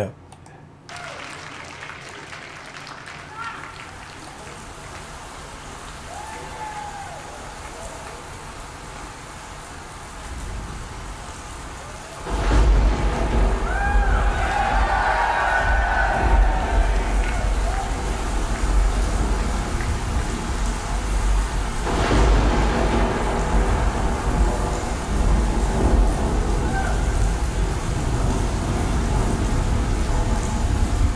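Recorded rain-and-thunder intro of a live rock concert: a steady hiss of rain, then about twelve seconds in a loud, deep thunder rumble sets in and keeps going, with scattered crowd shouts over it.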